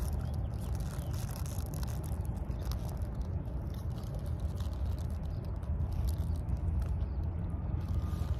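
Outdoor background noise: a steady low rumble, with faint crinkles and ticks from paper burger wrappers being handled while people eat.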